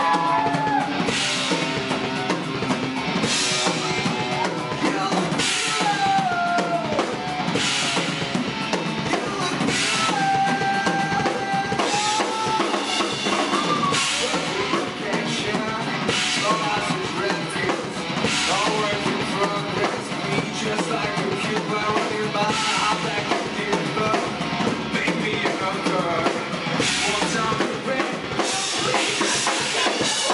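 Live rock band playing an instrumental passage without vocals: a distorted electric guitar plays a bending lead line over a driving drum kit, with cymbal and snare hits landing about once a second.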